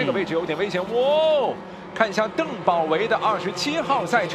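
Race commentator's voice talking fast, with one long drawn-out call that rises and falls about a second in.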